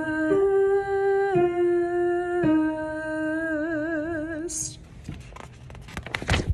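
A single woman's voice singing a wordless alto line in long held notes, stepping from one pitch to the next; the last note is held with a wide vibrato and ends about three-quarters of the way through. A brief hiss follows, then it goes quieter.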